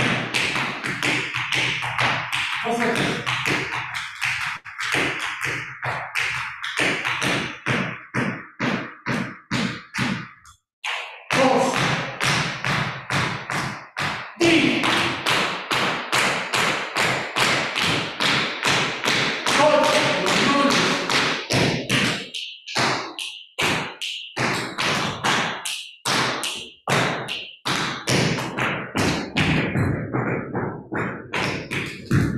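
Dance shoes tapping and stepping on a hard, polished floor: footwork of taps, digs and stomps in a quick, uneven rhythm, pausing briefly about ten seconds in.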